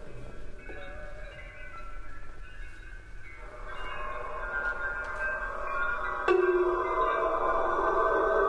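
Contemporary Japanese chamber music for shakuhachi, biwa, flute, harp and tape: many high, held tones overlap. About six seconds in comes a sudden louder attack, after which a denser cluster of sustained tones sounds.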